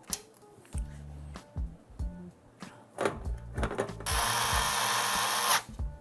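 An electric screwdriver runs steadily for about a second and a half near the end, driving a screw into a PC case. Scattered clicks and taps of hardware being handled come before it.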